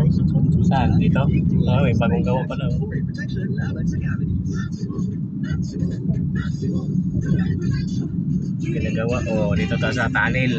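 Steady low rumble of engine and road noise heard from inside a moving vehicle, with indistinct voices in the first couple of seconds and again near the end.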